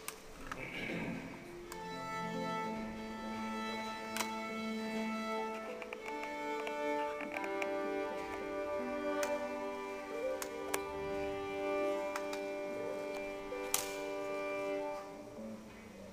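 Violin and classical guitar duo playing slow, long held notes, the violin's bowed tones sustained over a few sharp plucked notes. The music stops shortly before the end.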